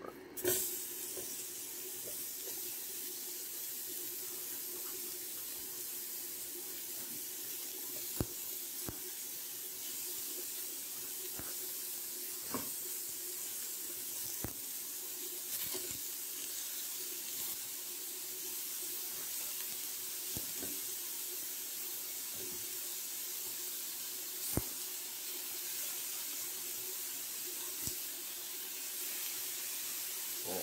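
Ground beef sizzling steadily in a hot non-stick skillet as it starts to brown, with occasional sharp pops of spitting fat.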